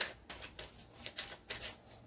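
Tarot cards being shuffled by hand: a quick, irregular run of short card snaps and rustles, about four or five a second.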